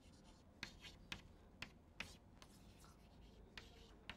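Chalk writing on a blackboard: a series of faint, short taps and scratches as the chalk strokes out letters, about seven in all.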